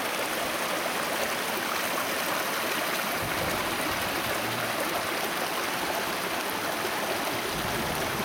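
A small mountain stream cascading over rocks: a steady, even rush of water.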